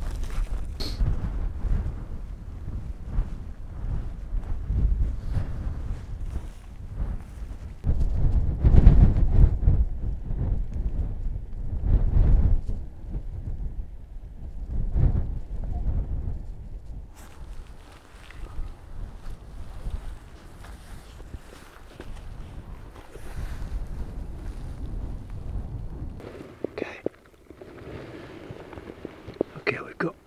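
Gusting wind rumbling on the microphone, rising and falling, with scuffing footsteps and rustling through heather. The rumble drops away near the end.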